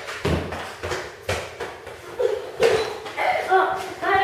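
A few sharp thumps on a concrete floor, each ringing briefly in the echoing garage, with a child's brief vocal sounds in between.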